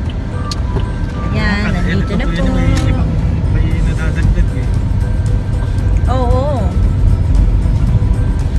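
Steady low rumble of road and engine noise inside a moving car's cabin, with music playing over it and a voice singing at times.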